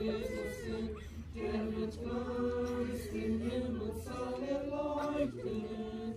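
A group of mourners singing a German hymn unaccompanied, in several voices with long held notes.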